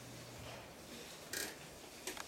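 Quiet room noise with one brief rustling scrape a little past the middle.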